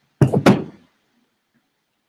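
Two sharp knocks close to the microphone, about a third of a second apart near the start, each dying away quickly.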